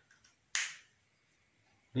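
A single sharp click about half a second in, fading quickly.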